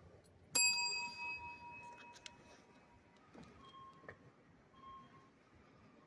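A counter service bell struck once, ringing out and fading away over about two seconds. The ring calls a clerk to the counter.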